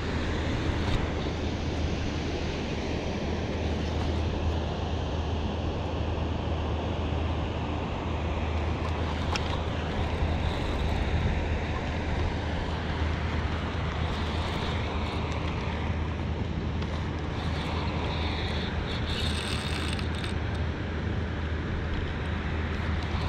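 Steady low roar of water pouring through a dam's open spillway gates, even in level throughout, with a few faint clicks about halfway through.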